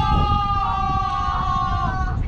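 A person's long, high-pitched 'woo' cry, held for about two seconds and stopping near the end, over wind rumbling on the microphone.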